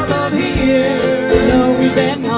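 Live trop-rock band music: an acoustic guitar and a keyboard over a steady beat, with a singing voice.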